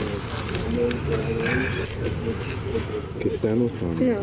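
Crowd chatter: many people talking at once in overlapping voices, with no single clear speaker.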